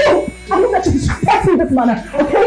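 Voices talking in short, expressive bursts, with high, yelping pitch movements.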